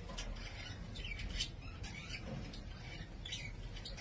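Quiet room tone with a few short, faint, high bird chirps scattered through it.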